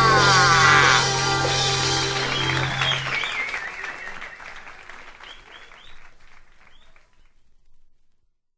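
A jazz group's closing chord in a live recording: a falling glide across the held chord in the first second and a low sustained note that stops about three seconds in. Audience applause follows and fades out to nothing near the end.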